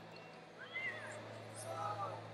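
Wrestling shoes squeaking on the mat as the wrestlers move their feet: two short chirping squeaks, one just under a second in and another near the end, over a steady low hum and faint background voices.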